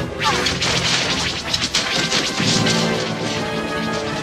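Cartoon sound effects of smashing and crashing, many impacts in quick succession as food and dishes are flung around a kitchen, over background music.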